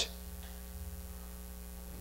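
Faint, steady low electrical mains hum in the sound system, with no other sound over it.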